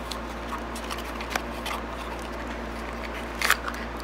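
Light cardboard and plastic packaging rustle and clicks as a small cardboard box is opened and a plastic-wrapped pocket sharpener is pulled out, with a brief louder crinkle about three and a half seconds in.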